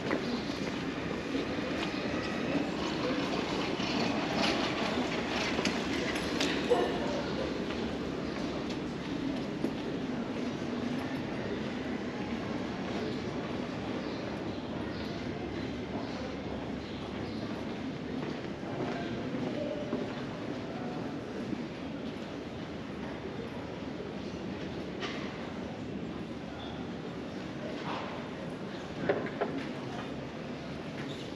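Street ambience in a pedestrian lane: passers-by talking over a steady low rumble, with a few short clicks.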